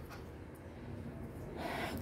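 A woman's short sniff or breath in through the nose, near the end of a quiet pause.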